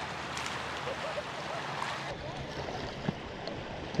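Steady rush of a shallow river's current flowing over gravel.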